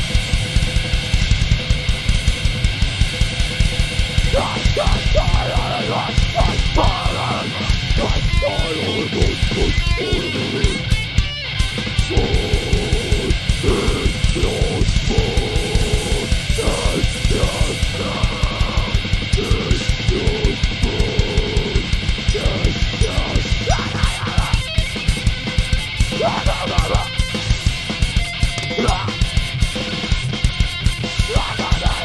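Live hardcore band playing loud distorted electric guitars over a fast, steady drum beat. Shouted vocals come in about four seconds in and carry on through most of the rest.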